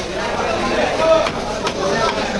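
A heavy knife chopping through a fish fillet into the wooden log of a chopping block, with several sharp knocks in the second half.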